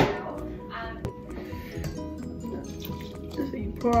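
Kitchen tap water running briefly into a plastic measuring cup, about a second in, after a sharp knock at the start, with background music underneath.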